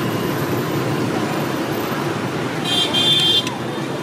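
Steady street traffic noise, with a short, high vehicle horn toot a little under three seconds in.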